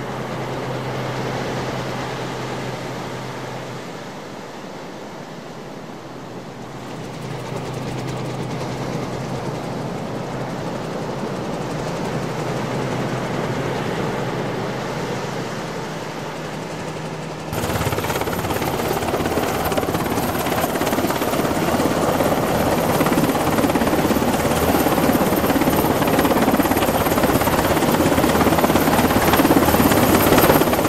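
Helicopter engine and rotor noise as a continuous rushing drone. About halfway through it cuts abruptly to a louder stretch with a thin, steady high whine on top.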